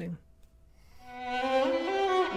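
A recorded classical music excerpt fades in about a second in: bowed strings with a violin-led line whose pitch steps upward.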